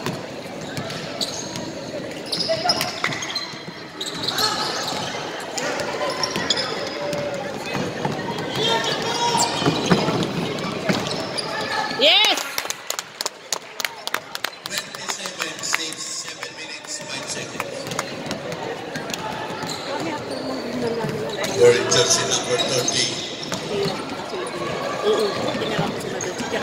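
Basketball bounced on a hardwood court during play, with a run of quick knocks about halfway through, over voices of players and spectators talking and calling out.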